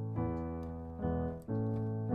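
Piano chords played on a digital stage keyboard with a layered grand piano and FM electric piano sound: an A major chord in root position, struck just after the start, held, and struck again about one and a half seconds in.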